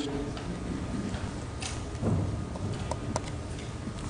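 Stylus tapping and scratching on a tablet screen while writing, a few irregular light ticks over a low room hum.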